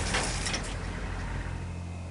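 Pickup truck towing a boat trailer, its engine running with a steady low hum under a noisy hiss that eases off after the first second.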